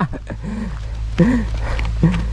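Strong wind buffeting the microphone in a steady low rumble, with two brief voice-like grunts, about half a second and a second and a quarter in.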